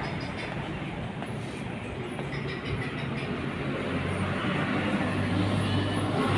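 Motor vehicle engine running amid steady street noise, its low hum growing louder toward the end.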